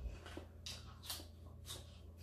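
Someone biting and chewing a fresh cucumber slice close to the microphone: a few short, crisp, irregular crunches.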